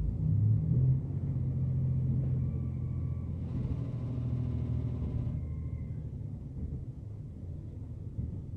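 Diesel railcar heard from inside the passenger cabin: a steady low engine drone over the rumble of the wheels on the rails, loudest in the first second and then easing off. About three and a half seconds in, a brief rush of higher noise lasting under two seconds as the train runs past a concrete viaduct.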